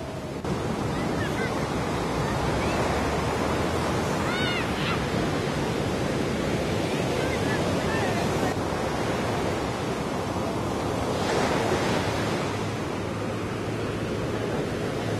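Steady wash of beach ambience: surf and wind on the microphone, with scattered voices of people crowding round.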